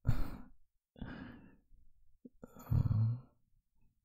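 A man's short soft laugh, then breathy sighs: a faint one about a second in and a louder, voiced one from about two and a half seconds in.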